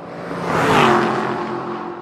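Logo ident sound effect: a car-like whoosh that swells to a peak about a second in and then fades, its engine-like tone dropping in pitch as it passes, like a car going by.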